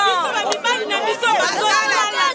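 A woman speaking loudly and emphatically, close to the microphone.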